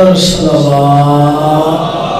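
A man's voice chanting one long drawn-out note into a microphone, stepping down in pitch about half a second in and holding it until near the end.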